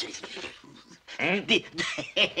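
A man's strained, whimpering vocal noises as he reacts to a swallow of neat calvados: a sudden gasp at the start, then from about a second in a string of short cries that rise and fall in pitch.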